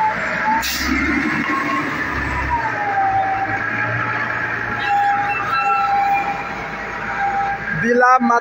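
A siren wailing slowly up and down, then holding one pitch, over street traffic noise and the low rumble of a vehicle engine that fades out a few seconds in.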